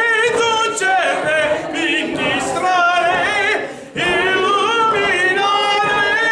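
A man singing unaccompanied, long held notes with a wavering vibrato, with a short break for breath just before four seconds in.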